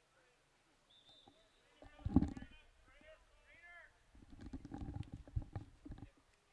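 Distant voices calling out across a football field, faint under the commentary microphone, with low rumbles on the microphone about two seconds in and again through the second half.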